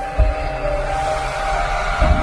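Logo-intro music: held synth notes, with a deep boom just after the start and a rising whoosh that swells through the rest.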